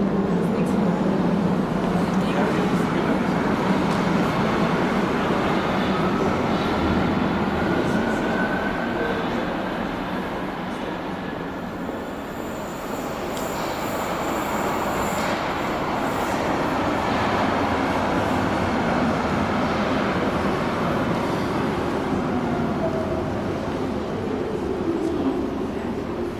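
DUEWAG U2 Stadtbahn train pulling out of an underground station hall, its motor whine rising as it gathers speed and fading. A second train then rolls in, its whine falling as it slows near the end.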